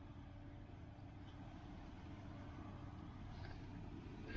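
Faint steady low rumble with a thin steady hum running under it; no distinct knocks or splashes.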